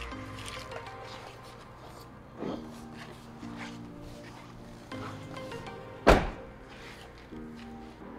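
Background music, with one loud thump about three quarters of the way through: the front passenger door of a 2021 Mercedes Sprinter van being shut.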